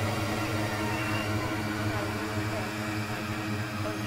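Dark ambient horror drone: a steady low hum under a haze of eerie tones, with faint, indistinct voices murmuring beneath, slowly getting quieter.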